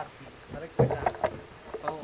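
Men's short shouted calls, one of them "tarik" ("pull"), as they haul a heavy wooden cabinet frame up a wall; no other sound stands out clearly.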